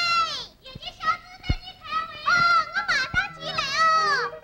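A girl and a woman laughing loudly together in quick high-pitched bursts, just after a long high held cry breaks off with a falling glide.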